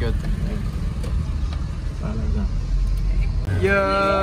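Car cabin noise from a slowly moving car: a steady low engine and road rumble. Near the end it cuts off and a voice holds one long note that slowly falls in pitch.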